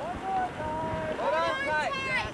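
A person's voice calling out from the boat, one long held call followed by quicker drawn-out syllables, over wind hiss on the microphone.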